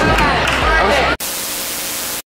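Girls' voices and chatter for about the first second, then a hard cut to a burst of steady static hiss: a TV-static transition sound effect laid over the edit.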